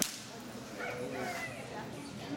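A single sharp slap at the very start, typical of a palm slap in an empty-handed wushu form, followed by a faint murmur of onlookers.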